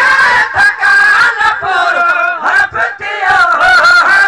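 A man singing at full voice into a handheld microphone, amplified loud: long held notes that waver in pitch, broken by short pauses between phrases.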